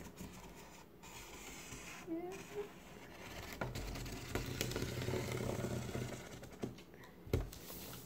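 Black marker scratching softly over a paper pattern as its outline is traced, with a few faint taps.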